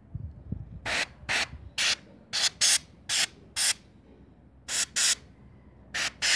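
Compressed-air blow gun fed by a homemade compressor, fired in short hissing blasts at a graphics card's heatsink to blow out dust. Nine quick blasts come in rapid runs, with a brief pause near the middle.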